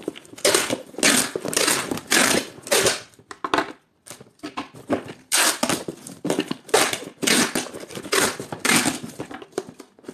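Packing tape being pulled off the roll in a quick series of short strips and pressed onto a cardboard box, with a brief pause about four seconds in.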